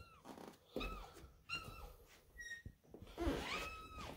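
Domestic cat giving a few short, faint meows about a second apart, the last one longer.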